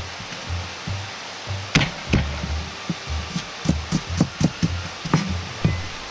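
Background music with a steady bass line, over irregular sharp knocks of a Chinese cleaver striking cabbage core on a cutting board, coming more closely together in the second half.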